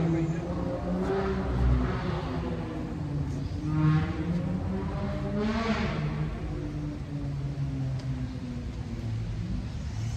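Street traffic on wet roads: a steady low rumble, with two vehicles swelling louder as they pass, about four and about six seconds in.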